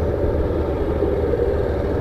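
Small Honda street motorcycle's engine running steadily as the bike rounds a curve at low speed, heard from the rider's seat.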